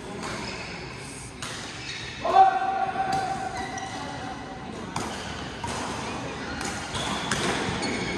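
Badminton hall sounds: sharp racket hits on shuttlecocks at irregular intervals and voices, all echoing in a large hall. A held squeak-like tone, the loudest sound, starts about two seconds in and lasts over a second.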